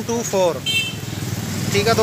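A small engine running with a steady, fast low pulsing under the voices.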